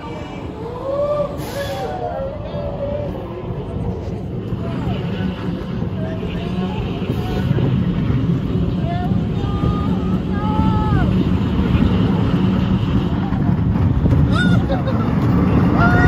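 Roller coaster train rolling along its track with a steady rumble that grows gradually louder, and riders' voices now and then over it.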